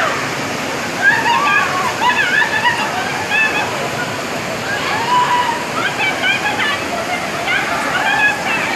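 Muddy floodwater rushing down a street in a steady, heavy torrent, with people's voices talking and exclaiming over it.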